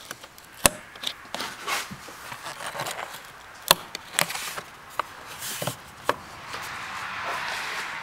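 Plastic top cover of the cabin air filter housing being worked into place: scraping and rubbing against the weather stripping, with several sharp clicks as it snaps into its retaining clips.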